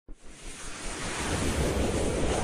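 A rushing whoosh sound effect that swells steadily louder, with a low rumble underneath.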